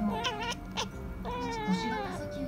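Calico kitten chattering at prey seen through a window, the excited hunting call of an indoor cat. A quick wavering trill comes first, then a longer call with a slight fall in pitch from past the middle to the end.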